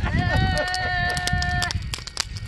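A person's voice holding one long, high, steady sung or yelled note for about a second and a half, crooner-style, then breaking off. Scattered sharp crackles, as from a burning fire, run underneath.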